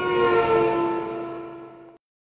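Closing sting over the programme's title card: a held chord of several tones, drifting slightly down in pitch, that swells in the first half-second, fades, and cuts off sharply near the end.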